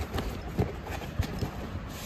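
Cardboard shoebox being handled and its lid pressed shut by hand: several soft, hollow knocks of hand and cardboard, with light rustling.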